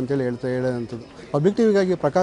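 A man speaking, his words drawn out, with a short pause about a second in.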